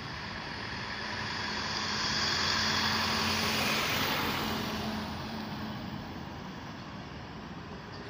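Road traffic: a motor vehicle passing close by, its rush of engine and tyre noise swelling over the first couple of seconds and fading away after about five seconds.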